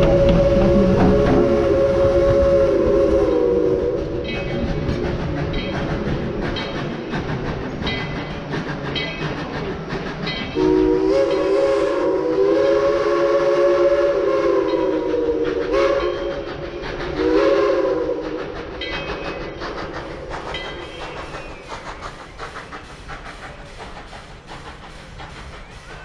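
Tweetsie Railroad No. 190, a narrow-gauge steam locomotive, blowing its steam whistle, a chord of several notes, as the train pulls away: one blast ending a few seconds in, a long blast around the middle and a short one shortly after. In between, the cars' wheels click over the rail joints, and the whole train grows fainter toward the end.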